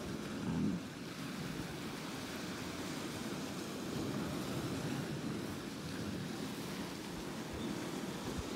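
Steady wash of sea surf, with some wind noise on the microphone.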